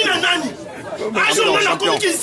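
Speech only: voices talking quickly, with a short lull about half a second in.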